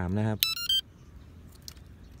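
A brief run of high, quick beeping notes stepping in pitch, lasting under half a second, then low steady background noise with a few faint ticks.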